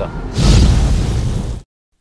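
Editing transition sound effect: a loud rushing noise burst, heaviest in the low end, lasting just over a second and cutting off abruptly into silence.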